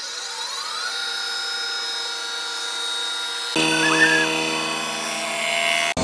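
Cylinder-head surfacing machine's motor spinning up, a rising whine that levels off about a second in and then runs steadily. About three and a half seconds in the sound changes abruptly to a fuller, lower hum as the machine keeps running.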